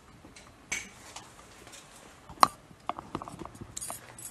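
Scattered light clicks and knocks of small hard objects being handled, with one sharp metallic clink about two and a half seconds in and a quick run of smaller clicks after it.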